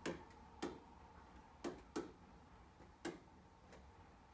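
About six short, sharp clicks at uneven intervals: a stylus or pen tip tapping against a touchscreen display while words are handwritten on it.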